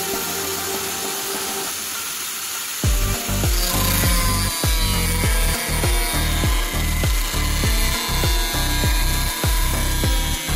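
Makita angle grinder with a red disc cutting into a PVC pipe, the harsh cutting sound setting in about three seconds in and going on unevenly. Background music plays underneath.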